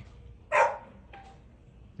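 A dog gives a single short bark about half a second in.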